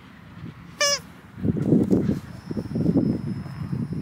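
A dog's noise-making toy gives one short high squeak about a second in as it is thrown. Low, muffled rumbling noise follows.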